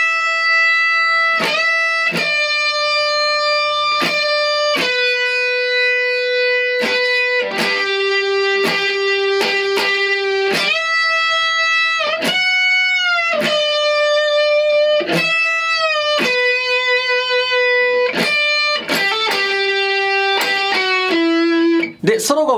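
Heavily distorted Stratocaster-style electric guitar playing a slow single-note solo: long sustained notes held straight without vibrato, some bent up a full step and released. Between the notes the pick scratches across strings muted by the fretting and picking hands.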